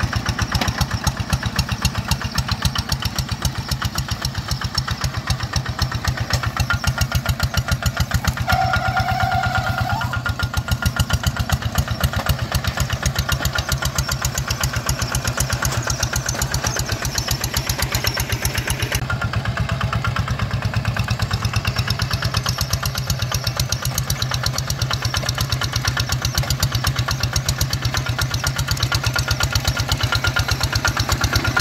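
The single-cylinder diesel engine of a two-wheel hand tractor chugging steadily under load as it pulls a plough through wet rice-field soil.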